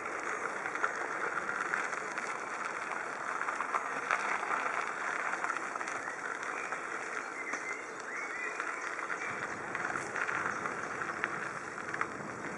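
Steady rolling and rattling noise of wheels travelling over a gravel path, with many small crunches and clicks.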